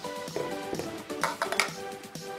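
Background music with steady sustained notes, with a few short clicks from the sections of a three-piece aluminium and plastic paddle being handled and fitted together.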